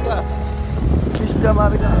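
Vehicle driving on a mountain road: a steady low engine and road rumble, with wind noise on the microphone growing from about halfway through.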